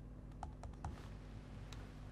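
Faint small clicks and taps of a pen on paper as a word is handwritten: a quick run of them about half a second in and one more near the end, over a steady low hum.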